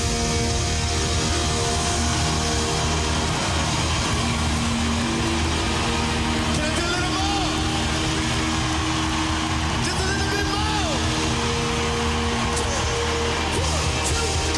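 Live band holding long sustained chords over a heavy bass, with an arena crowd cheering and clapping over the music; a few short whoops rise and fall through it.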